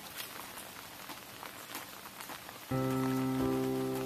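Rain pattering steadily, with small scattered crackles. About three-quarters of the way in, sustained keyboard chords of a music track come in over it.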